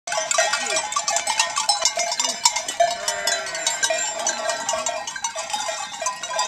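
Many sheep bells clanking together in an irregular, continuous jangle, with a few low bleats from the flock.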